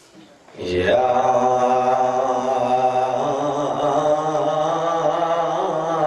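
A man's voice starting about half a second in with one long, drawn-out chanted note in a religious recitation, wavering slightly and stepping up in pitch about three seconds in.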